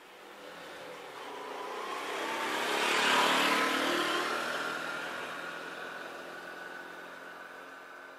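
A car driving past: it approaches, grows louder to its peak about three seconds in, then fades slowly as it moves away.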